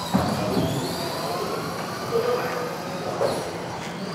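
Several electric RC cars racing on an indoor carpet track, their motors whining up and down in pitch as they accelerate and brake. A sharp knock comes just after the start, and two softer knocks follow later.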